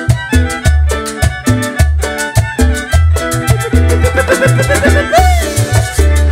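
A live band plays Salvadoran música campirana: a steady dance beat of bass and percussion under a fiddle melody. A short swooping tone sounds near the end.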